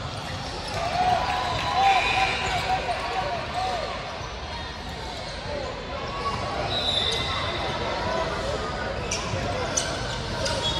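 Basketball game on a hardwood gym court: sneakers squeaking in a quick run of short squeaks from about one to four seconds in, the ball bouncing, and players' and spectators' voices.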